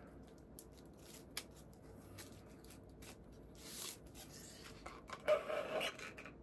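Paper wrapper being torn and slid off a drinking straw, faint rustles and small clicks. Near the end the straw is pushed into the drink cup with a short squeaky rub.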